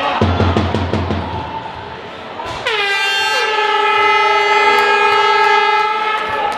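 A loud air-horn blast in the hall: one steady tone, sliding down briefly as it starts, held for about three seconds from about halfway through. Before it comes a quick run of low thumps, about six a second.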